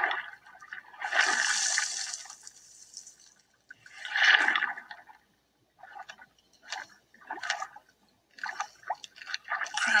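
Water sounds: two rushing, swirling bursts of water in the first half, followed by short, scattered splashy sounds.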